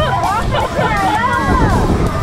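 Several riders on a swinging pirate-ship ride screaming and laughing together, their overlapping voices gliding up and down, with music underneath.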